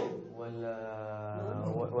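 A man's voice holding one long, level vowel for about a second, drawn out without forming words.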